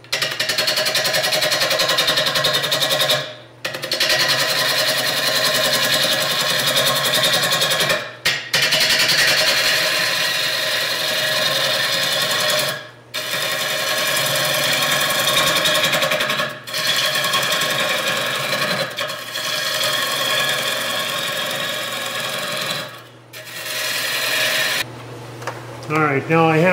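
Three-quarter inch bowl gouge cutting the bottom face of a spinning ash bowl blank on a wood lathe, leveling it off: a loud, rasping cut with a fast, even ticking. It comes in several passes with brief breaks where the tool lifts off, and stops shortly before the end.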